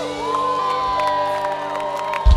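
A large concert crowd cheering and whooping as a punk song ends, with a few steady held tones ringing underneath.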